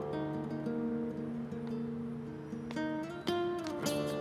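Background score on acoustic guitar: plucked notes ringing over sustained tones, with a louder strummed chord about three seconds in.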